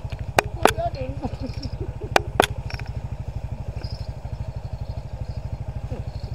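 Motorcycle engine idling with a steady, fast, even beat, and two pairs of sharp clicks in the first two and a half seconds.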